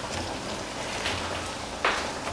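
Hot cooking oil sizzling, a steady crackling hiss, with a brief breathy burst near the end.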